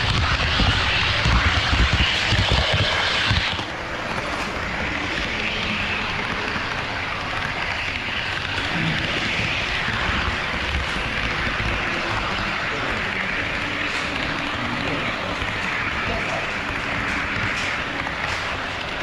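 Running noise of an HO scale model train on KATO Unitrack, heard from a camera riding on it: a steady rolling rumble that is louder for the first three or four seconds, then settles. A background murmur of voices runs underneath.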